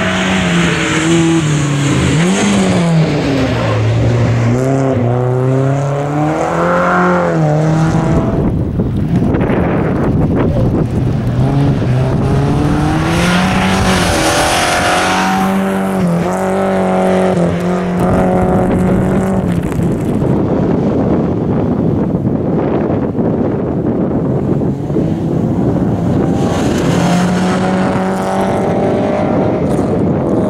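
Rally car engine at high revs under hard acceleration, its pitch climbing and dropping again and again through gear changes. Tyre and gravel noise runs under it, and in two stretches the engine note fades behind that noise.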